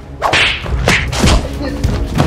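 Whoosh and swish sound effects laid over a scuffle between two people: one swish shortly after the start and more about a second in, over a steady low rumble.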